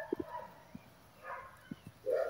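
Quiet, with a few soft clicks and taps from handling a fledgling great kiskadee's wing, and a faint sound a little past halfway.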